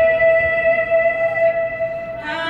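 A woman singing the national anthem solo into a microphone, holding one long high note of its closing line, with a slight waver about one and a half seconds in.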